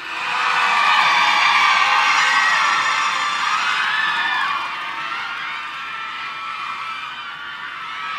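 Large crowd cheering and applauding, with high-pitched screams gliding up and down over it; it swells over the first second and fades down from about halfway through.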